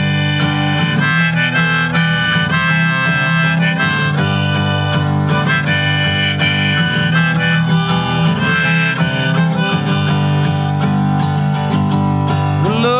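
Harmonica in a neck rack played over a pick-strummed acoustic guitar: the instrumental intro of a country song. The harmonica stops near the end, leaving the guitar strumming alone.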